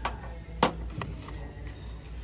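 A few light knocks and clicks from small cosmetic boxes and tubes being handled and set against a store shelf, the sharpest about half a second in, over a steady low hum.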